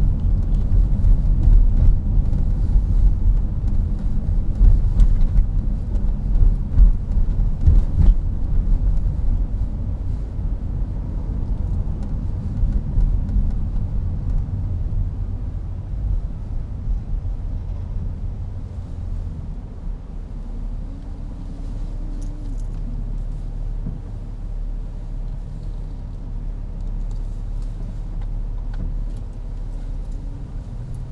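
Car running through city streets, heard from inside the cabin: a steady low engine and road rumble with a sharp bump about eight seconds in. It grows quieter and smoother over the second half.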